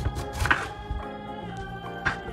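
Kitchen knife cutting through pineapple and knocking on a wooden cutting board: a few light taps, then one sharper knock about halfway in. Background music plays throughout.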